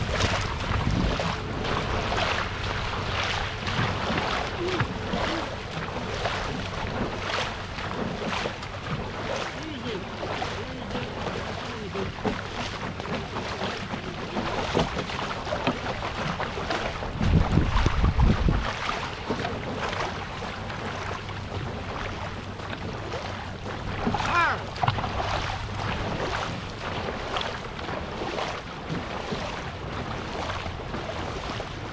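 Dragon boat paddling: water rushing past the hull with regular paddle strokes a little faster than one a second, and wind on the microphone. A loud low buffet of wind comes about two-thirds of the way in.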